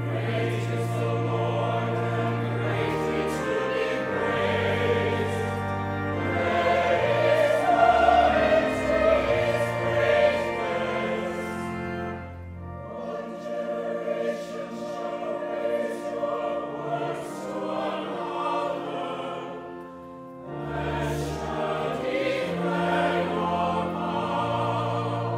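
Church choir singing over sustained low organ notes. It swells loudest about a third of the way in, then drops back and briefly thins twice.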